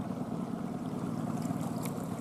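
20 hp Honda four-stroke outboard motor idling steadily, a low even hum with a fast pulse, pushing a small inflatable boat along at walking pace.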